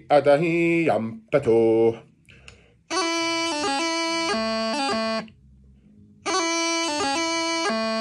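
Bagpipe practice chanter playing the same short phrase twice, held notes changing in quick steps with grace notes between them, with a short pause between the two runs. A voice is heard briefly in the first two seconds.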